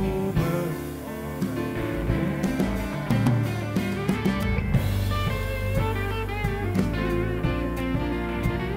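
Live blues band playing an instrumental passage: electric guitar over bass, drums and electric keyboard.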